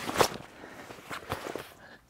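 Heavy ripstop canvas swag door being flipped back over the top. There is one sharp rustle of canvas about a quarter second in, followed by softer rustling and small clicks as the fabric settles.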